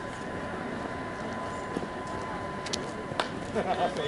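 Indistinct talk from players and spectators at an outdoor softball field over a steady faint whine. There are a couple of sharp clicks about three seconds in, and louder voices near the end.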